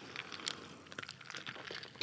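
Faint sipping from a gin and tonic glass with a few small clicks of ice against the glass, and the glass set down on the desk near the end.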